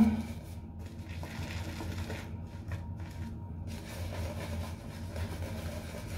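Boar-bristle shaving brush (Omega 48) working Tabac shaving soap lather over a stubbled face: soft, uneven bristly rubbing that comes and goes between strokes, over a steady low hum.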